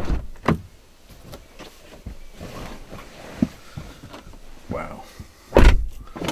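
Car door of a Bentley Continental GT being shut with a heavy thump near the end, after a thump at the start and a few seconds of small knocks and rustling as someone settles into the driver's seat.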